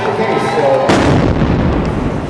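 A pressure-cooker bomb exploding about a second in: one sudden, loud bang followed by a deep, lingering boom that slowly fades.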